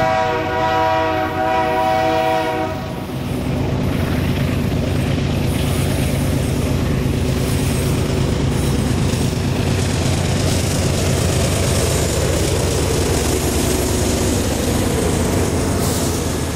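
Canadian Pacific diesel freight locomotives sounding their horn, one chord of several tones held for nearly three seconds. Then the engines run and steel wheels roll and clatter over the rails as the train passes close by, a steady loud rumble to the end.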